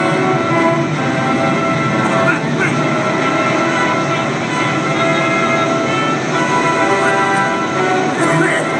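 Film soundtrack heard through a Sharp television's speaker: a steady, sustained chord of many held tones.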